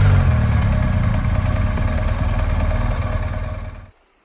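A motor vehicle's engine running, loud and steady, cutting off suddenly near the end.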